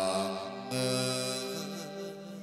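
Chầu văn ritual music: a sung, chant-like long held note that comes in about two-thirds of a second in.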